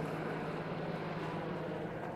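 A steady low engine hum, unchanging, over an even background noise.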